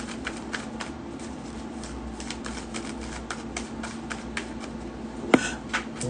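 A tarot deck being shuffled by hand: a steady run of soft card clicks, with one sharper click about five seconds in.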